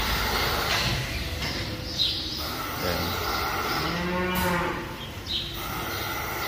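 A dairy cow mooing once, a long call about four seconds in, over the steady hum of the milking shed machinery.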